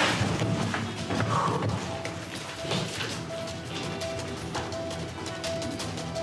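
Tense background music with a short note repeating about twice a second, over thuds and knocks of chairs being shoved back and hurried footsteps as a group of people rushes out, busiest in the first two seconds.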